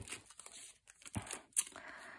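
Clear plastic packaging sleeve crinkling and rustling in irregular bursts as a packaged metal cutting die is picked up and handled, with a few sharp light clicks.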